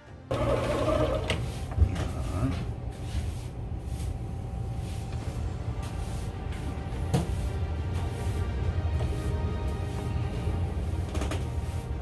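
Electric line-spooling motor starting up and running steadily, spinning a conventional reel to strip braided fishing line off at speed, with a couple of sharp clicks along the way.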